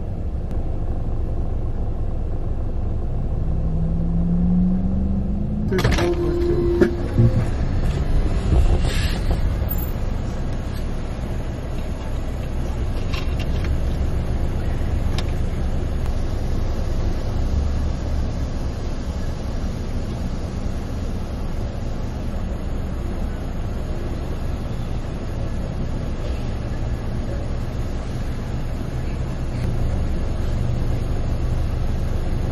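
Steady low rumble of a car heard from inside the cabin as it idles and creeps forward in a drive-thru line. A short rising tone sounds about four seconds in, followed by a sharp click and a few knocks over the next three seconds.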